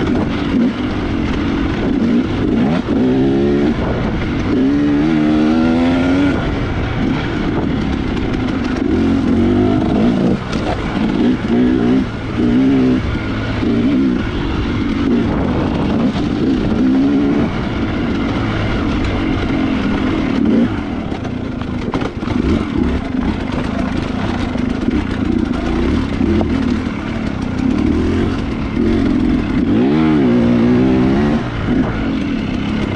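2018 Husqvarna TX300 two-stroke dirt bike engine with a Keihin carburettor, revving up and down over and over as it is ridden hard over a rocky trail. There are sharp rev-ups about 3 and 5 seconds in, and again near the end.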